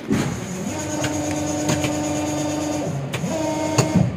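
Machinery running: a steady motor tone sets in about half a second in, falls away and glides near three seconds, then returns higher, with scattered clicks and a sharp knock near the end.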